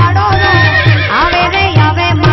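Live Gujarati folk music: harmonium melody over tabla keeping a steady beat, with a brief rising glide of pitch a little after a second in.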